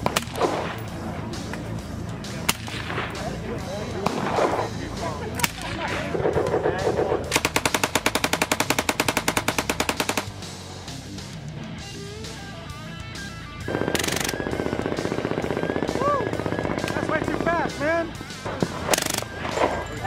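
Guns firing on an open range: separate shots, then a long fully automatic burst of about three seconds starting some seven seconds in, followed by more shots.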